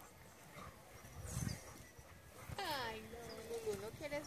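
A person's drawn-out vocal exclamation starting about two and a half seconds in, its pitch falling and then held, over quiet outdoor background.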